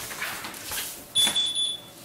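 A back door being unlatched and pulled open, with a short, steady, high-pitched electronic beep lasting under a second that starts about halfway through.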